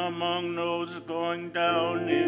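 Responsorial psalm being sung: a voice singing with vibrato over steady, held keyboard accompaniment.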